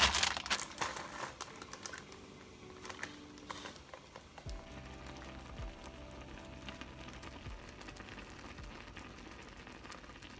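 Plastic food packaging crinkling and rustling as packs are handled in a fridge drawer, fading out in the first couple of seconds. Faint background music comes in about four and a half seconds in.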